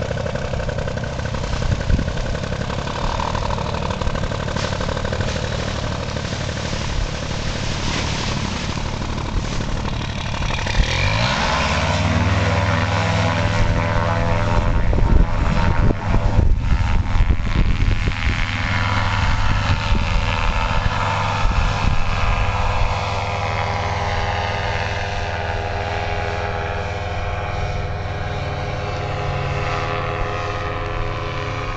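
Paramotor engine and propeller throttled up about eleven seconds in, the pitch rising quickly and then held at high power for the takeoff run and climb. Before the run-up there is a rough, noisy rumble, and over the last ten seconds the engine's pitch sags slowly.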